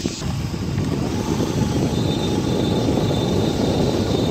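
Motorcycle riding along a rough, muddy dirt road: a steady low rumble of the engine mixed with wind buffeting the microphone.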